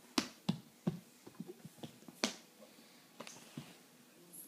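A baby's palms slapping on a hardwood floor as he crawls: three sharp slaps in the first second, then lighter taps, and one more loud slap a little over two seconds in.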